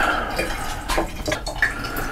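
Water running and dripping, with a couple of light knocks about a second in, as the warmed film developer solution is being cooled down.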